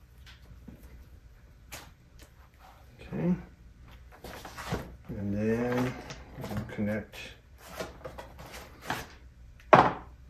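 A man's voice murmuring briefly twice, amid scattered light clicks and knocks as a nitrogen bottle's regulator, hose and gauge are handled.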